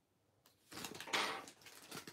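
Thin, heavily precreased origami paper rustling and crinkling as it is pinched and shaped into a fold, in one soft burst of under a second, followed by a few faint ticks.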